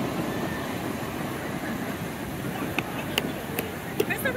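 Ocean surf washing up the beach: a steady rushing noise, with a few sharp clicks near the end.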